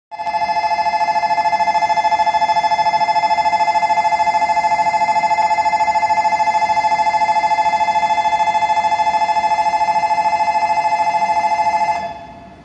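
Shinkansen platform train-approach warning bell: an electric bell ringing in a continuous, rapid, even trill that signals a train is about to arrive. It cuts off sharply at the very end.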